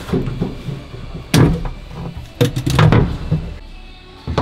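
Knocks and thuds of parts being handled in a carbon-fibre race-car cockpit, with two loud hits about a second and a half and two and a half seconds in, and lighter rattling between them.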